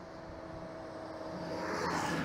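A coal hauling truck towing a second trailer passes close by. Its noise swells and peaks near the end, over a steady humming engine tone.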